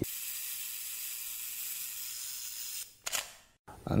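Camera sound effect over a viewfinder graphic: a steady high hiss for nearly three seconds, then a short shutter-like burst that cuts off suddenly.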